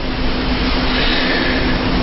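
A steady rushing noise with a faint low hum underneath, about as loud as the talk around it.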